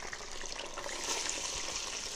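Potato chips frying in hot oil: a steady sizzle.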